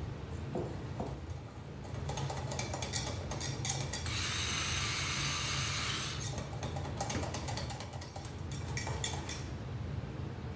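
A wire whisk clicks and clinks against a glass measuring cup as batter is stirred. About four seconds in, a hand-turned grinder mill grinds sea salt for about two seconds.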